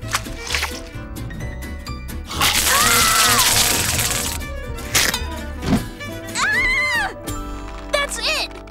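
Cartoon soundtrack: background music, with a loud noisy burst of sound effect lasting about two seconds from about two and a half seconds in and a tone rising and falling over it. A couple of sharp clicks follow, then another short rise-and-fall tone near the end.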